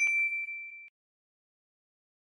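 A single bright ding, the notification-bell sound effect of a subscribe animation, sounded as the bell icon is clicked. It is one clear high tone that fades away in just under a second.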